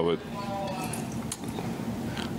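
A pause in speech filled by press-room background noise: a steady low hiss with faint light clinks and one short sharp click about halfway through.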